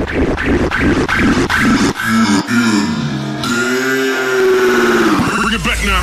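Channel intro sound effects: quick rhythmic strokes, then a long, slowed, voice-like tone that rises and falls, with a low rumble coming in near the end.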